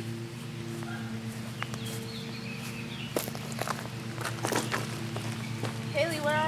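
Footsteps on grass and leaf-littered woodland ground, a series of short scattered crunches, over a steady low hum.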